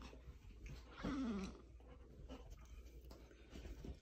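Golden retriever giving one short whine that falls in pitch, about a second in, amid faint small clicks and rustling.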